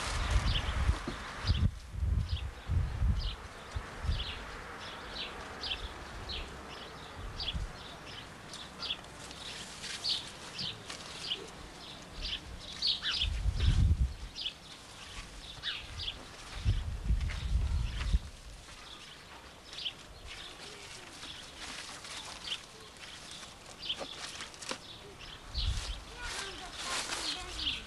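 Small birds chirping over and over in short high notes, with a few low rumbles, the loudest near the start and about halfway through.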